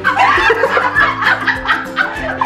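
People laughing and snickering over background music with a steady beat.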